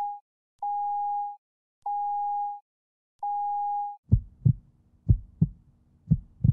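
Telephone-style tone beeping at an even pace, each beep under a second long, then a heartbeat sound effect of low double thumps about once a second, as the intro of a song.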